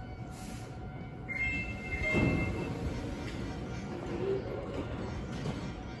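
Busy railway station platform ambience, with a steady electronic tone sounding for about a second starting a little over a second in and a brief low rumble around two seconds.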